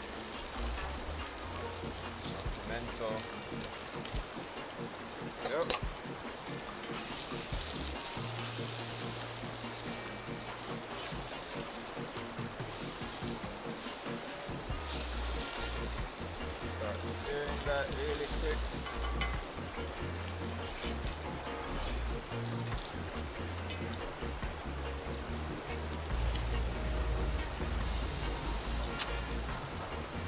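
Chopped onion, thyme, garlic and pepper sizzling in hot coconut oil in a cast-iron skillet over a wood fire, a steady frying hiss, with background music playing along.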